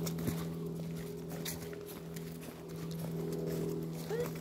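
Footsteps on a forest path covered in fallen leaves, irregular scuffs and crunches, over a steady low hum.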